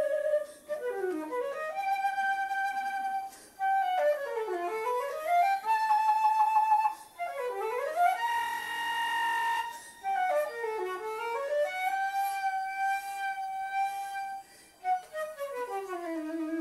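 Concert flute playing a slow passage: held notes broken by several quick runs that swoop down and back up, with a longer held high note about halfway through.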